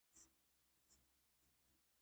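Chalk writing on a chalkboard, very faint: a few short strokes, the clearest just after the start and about a second in.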